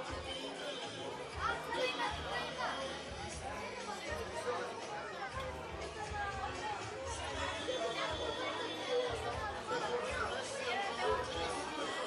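Many guests talking at once, no single voice standing out, over background music with a pulsing bass.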